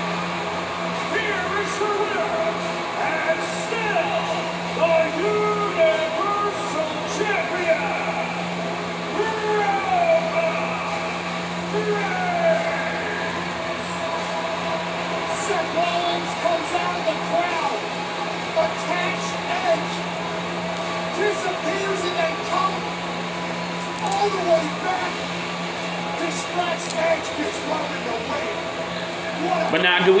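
Broadcast audio of a wrestling match played in the room: commentators talking over the event's background sound, heard through the room over a steady low hum.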